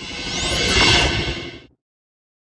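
Whoosh sound effect of a logo sting: a rush of noise that swells to a peak about a second in, with a thin high sweeping shimmer, then fades and cuts off shortly before the end.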